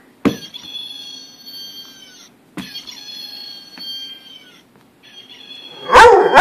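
A squeaky dog toy giving three long, drawn-out high squeals, each starting with a click.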